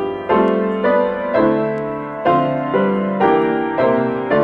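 Grand piano playing a hymn in full chords, a new chord struck about twice a second, each ringing and fading before the next.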